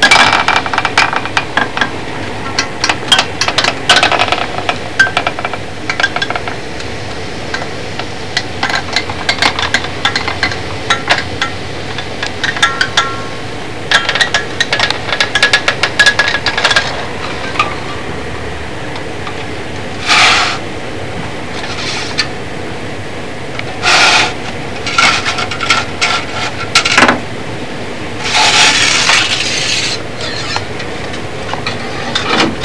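Irregular clicks, taps and short scraping rustles of a hot-wire foam cutter's wire being drawn along plywood rib templates through a foam block to cut a wing core, with a few longer scraping rustles in the second half over a steady low hiss.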